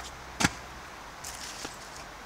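A stunt scooter hits the ground once, with a single sharp clack about half a second in, followed by a couple of faint clicks.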